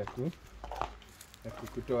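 Speech: a short word at the very start and more talk from about one and a half seconds in, with a quieter stretch between that holds a faint rustle just under a second in.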